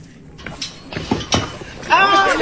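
Feet knocking on the wooden planks of a suspension footbridge, a string of irregular thuds starting about half a second in, with faint voices underneath.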